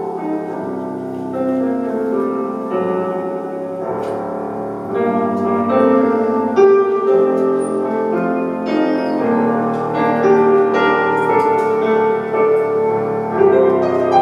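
Electric stage piano played solo, a melody over held chords with notes struck throughout, and no singing.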